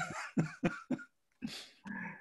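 A man laughing quietly under his breath: short breathy puffs with a cough-like burst about one and a half seconds in.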